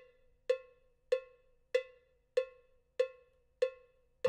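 GarageBand's sampled cowbell from the iOS beat sequencer's Studio kit, playing a steady one-hit-per-beat metronome click: about seven evenly spaced strikes, a little over half a second apart, each ringing briefly.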